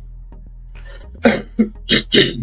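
A man coughing a few times in quick succession, starting just over a second in, over faint steady background music.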